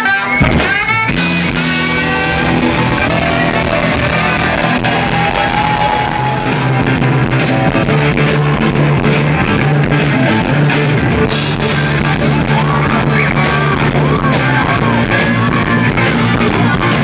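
Live rock band playing an instrumental passage, loud and continuous, led by electric guitar over drums, with saxophone and trumpet playing at the start.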